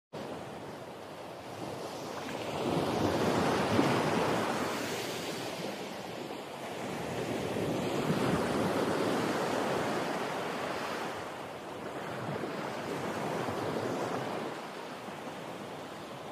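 Sea waves breaking and washing up a sandy beach, the surf noise swelling and fading about every five seconds.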